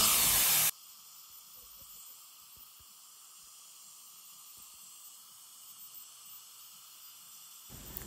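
Ultrasonic dental scaler running with its water spray hissing, cutting off abruptly under a second in, after which only a faint hiss remains.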